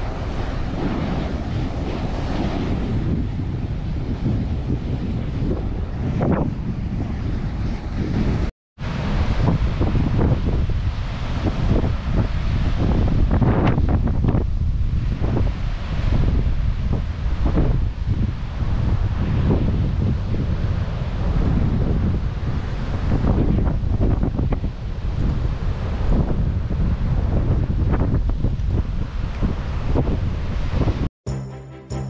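Ocean surf washing onto a sandy beach, with strong wind buffeting the microphone. The sound cuts out for a moment about nine seconds in, then the wind and surf carry on.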